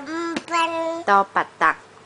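Sing-song chanting of Thai alphabet letter names: long syllables held on a level pitch, then a few short, quick ones after the middle.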